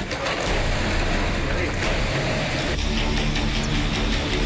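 Indistinct voices over a loud, rough rumbling noise. Near the end the noise thins and a steady low drone comes in.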